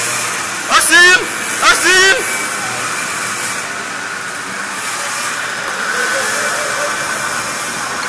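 Two short, loud vocal cries about a second apart, with wavering pitch, followed by a steady hiss of background noise.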